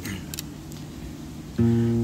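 Acoustic guitar: a few faint clicks of fingers on the strings, then a strummed chord rings out about one and a half seconds in, opening the song.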